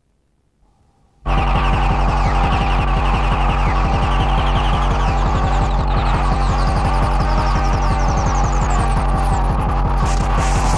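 A club DJ set of electronic dance music kicks in abruptly about a second in with a loud, fast, pounding bass beat. A rising high-pitched sweep builds over the last few seconds.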